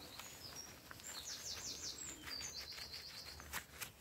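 A small songbird singing: short high chirps and two quick trills of rapidly repeated notes. A couple of light clicks near the end.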